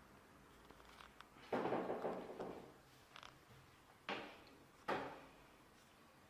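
Handling noise from a hand-held camera: a longer rustling bump about a second and a half in, then two sharp knocks about four and five seconds in, each fading quickly.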